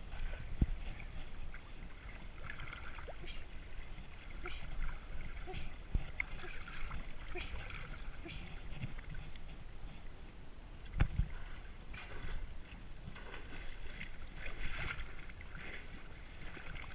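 Lake water sloshing and splashing around horses wading and swimming, over a steady low rumble. A few sharp knocks come through, the loudest about eleven seconds in.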